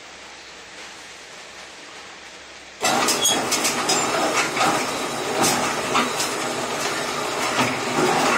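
Motor-driven steel wire straightener starting to run about three seconds in, after a faint steady hiss. It makes a loud, continuous clatter with many sharp clicks as the wire is fed through its rollers.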